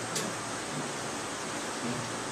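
Steady, even hiss of room background noise in a pause in the talk, with one faint brief click just after the start.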